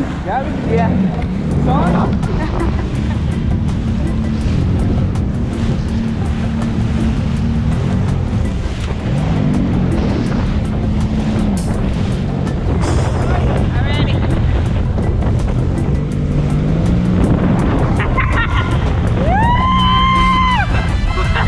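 Jet ski engine running at speed, with wind and spray noise on the microphone, under background music with a steady beat.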